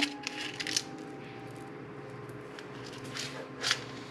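Light rustling and clicks of a clear plastic cup of candy pieces being handled and set aside, in two short bouts: just after the start and again about three and a half seconds in, over a faint steady hum.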